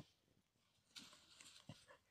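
A dog digging into soil and dry leaf litter with its snout and paws: faint scratching and rustling with a few small knocks, starting about a second in.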